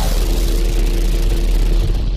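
Sound effect of an animated production-logo sting: a loud, deep, sustained rumble with a hiss over it and a faint steady tone.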